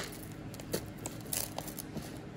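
Costume jewelry being handled and shifted on a tray: a sharp click at the start, then a few faint clinks of chain and metal pieces and a brief soft rustle.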